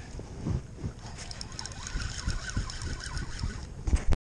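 Wind on the microphone and water slapping a small boat's hull, a steady low rumble, with scattered light clicks and rattles from about a second in.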